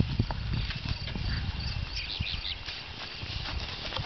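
Outdoor ambience: a steady low rumble with a few soft knocks, and short high bird chirps about two seconds in.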